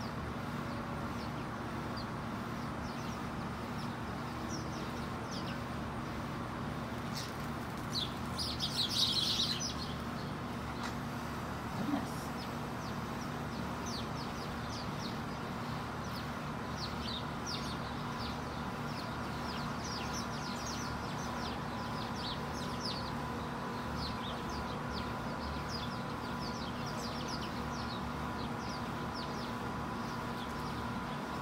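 A flock of house sparrows chirping: many short, quick chirps throughout, with a louder burst of chatter about eight to ten seconds in. A steady hum runs underneath.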